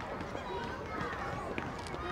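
Faint background voices of adults and children chatting outdoors, a low murmur with no one voice standing out, and a small tap about one and a half seconds in.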